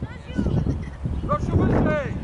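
Voices shouting on an outdoor football pitch, with short high-pitched shouts in the second half, over a steady low rumble of wind on the microphone.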